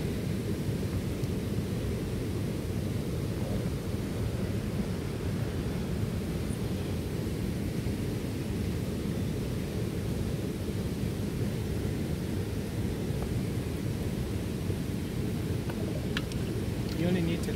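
Steady low rumbling outdoor noise, even in level throughout, with no distinct events.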